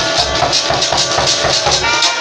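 Brass band playing: trumpets, trombones and saxophones over a regular beat from drum and shaken hand-held metal percussion.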